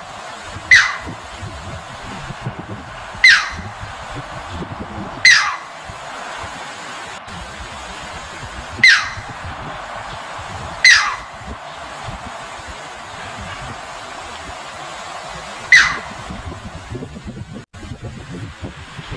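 Striated heron giving six sharp, short calls, each sweeping downward in pitch, spaced a few seconds apart over a steady background hiss.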